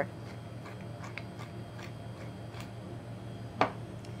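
Wooden pepper mill being twisted to grind fresh pepper, giving a few faint crunching clicks, then a single louder knock near the end as the mill is set down on the counter. A steady low hum runs underneath.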